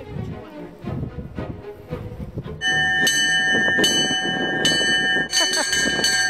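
Metal summit bell hung on a mountain-top cross, rung by hand: about two and a half seconds in it starts sounding loudly, struck again roughly every second so the ringing carries on without a break.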